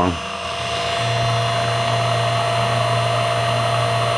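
Mini mill converted to CNC, its spindle running a quarter-inch carbide two-flute end mill through a wooden block while the stepper-driven table feeds. It is a steady machine sound, and a low hum joins about a second in.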